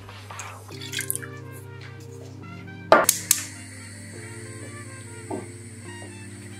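Water poured from a plastic measuring jug into a small empty saucepan in the first second or so, over steady background music. About three seconds in come two sharp knocks close together, the loudest sounds here.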